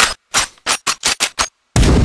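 A quickening run of about eight gunshots, each sharp report cut off into silence. Near the end, a loud, dense wall of trailer music and a boom cuts in.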